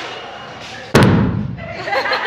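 A hydrogen-filled balloon, touched by a flame, explodes with a single sharp bang about a second in, followed by a short low boom.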